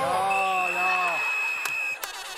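Cast members whooping and cheering with drawn-out falling calls as a dance ends. A steady high electronic beep joins about a third of a second in and holds until everything cuts off suddenly at the end.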